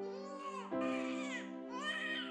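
Sad drama-score background music: sustained low chords, with a high wailing, crying-like line rising and falling in short arching phrases over them. A fuller chord comes in about three-quarters of a second in.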